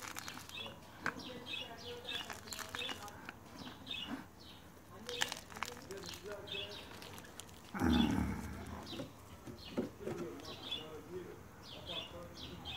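Small birds chirping over and over, with soft clicks and rustles of potting soil and a plastic seedling tray being handled. A short, loud low thump comes about eight seconds in.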